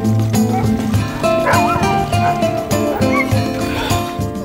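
Background music with a steady beat, over which harnessed sled dogs bark and give a few high yips in the middle.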